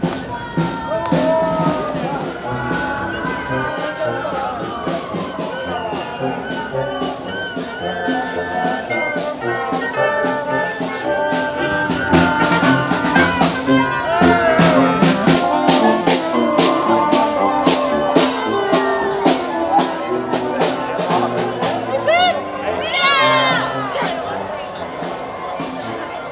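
A small marching wind band of saxophone, trombone and trumpets playing a tune, louder from about halfway through as it draws near, with crowd voices and chatter around it.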